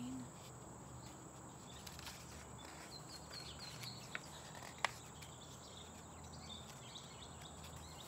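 Quiet outdoor background in which a bird chirps a quick run of short high notes about three seconds in, with a single sharp click from the book being handled just before the five-second mark.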